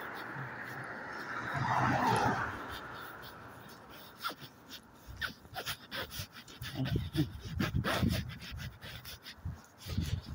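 A car passes on the street, its tyre and engine noise swelling to a peak about two seconds in and fading away. After that come quieter, regular footsteps on pavement, about two a second, with close breathing and handling noise on the phone's microphone.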